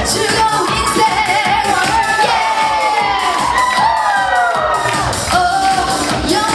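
Live upbeat trot medley: a woman singing into a microphone over a backing track with a steady beat, with the audience cheering along in the middle.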